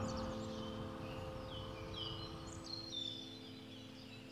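Small birds chirping faintly: a scatter of short, falling chirps. A soft held chord of background music fades out underneath.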